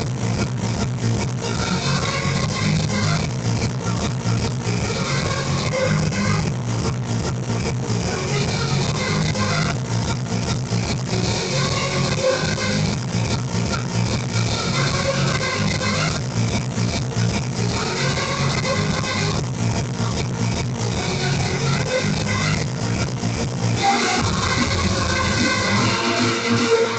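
Loud hardstyle dance music over a nightclub sound system, with a steady driving kick-drum beat. The deep bass drops out about two seconds before the end.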